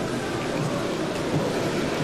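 Steady, even background noise of a large assembly hall.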